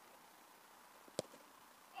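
A single sharp thud about a second in: a boot striking a football in a long kick.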